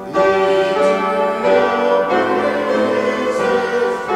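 Congregation singing a hymn together with accompaniment, held chords changing about every second.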